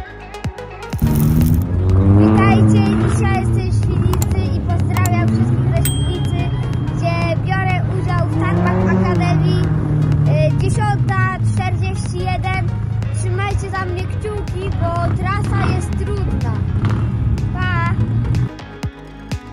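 A young boy talking, with background music and a steady low drone underneath.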